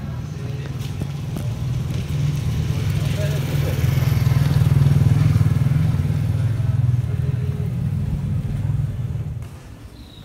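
A small motor vehicle's engine passing close by: a low rumble that builds to its loudest around the middle and dies away near the end.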